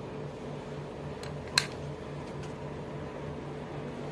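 A single sharp click of a wall socket switch being switched on, about one and a half seconds in, with a fainter tick just before it. A steady low hum runs underneath.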